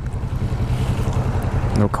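Kawasaki Vulcan S 650 parallel-twin engine running steadily at low revs, a constant low rumble.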